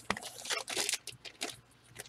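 Trading cards being handled: a quick run of short papery rustles and clicks as cards slide and snap against each other.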